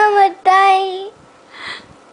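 A young girl crying: a high, drawn-out wail in two long held stretches that break off about a second in, followed by a short breathy intake of breath.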